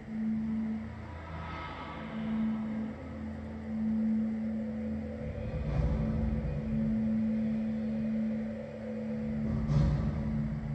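Film soundtrack sound design: a steady low droning tone over a rumble, with a short sharp crack just before the end.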